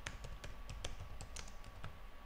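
Typing on a computer keyboard: about ten quick, unevenly spaced keystrokes.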